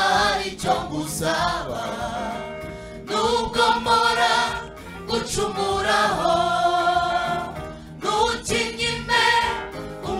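A gospel choir of mostly women's voices singing together in long phrases with held notes, two lead singers on microphones in front, with brief breaths between phrases.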